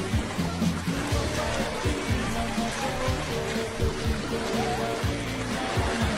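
Background music with held notes and a beat, playing from a TikTok clip.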